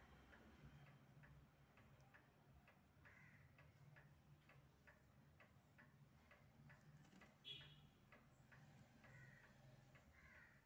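Faint, even ticking, about two ticks a second, over a low steady hum, with one brief high chirp about seven and a half seconds in.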